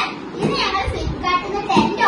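Young children's excited voices: overlapping chatter and exclamations.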